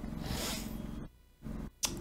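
A long, breathy exhale, a sigh through the mouth after a sip from a mug, fading out about a second in. A shorter breath follows near the end.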